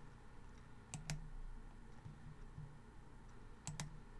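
Computer mouse clicking: two quick double clicks, one about a second in and one near the end, over faint room hum.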